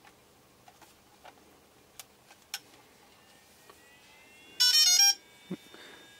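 DJI Phantom 3 Professional powering up: a few faint clicks from the battery button, a faint rising tone, then about four and a half seconds in a short, loud burst of quick stepped beeps, the aircraft's power-on tones.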